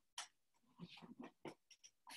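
Near silence: room tone over a home microphone, with a few faint, brief noises.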